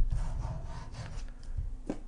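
A low thump at the start, then soft rubbing and scraping of handling noise at a desk close to the microphone.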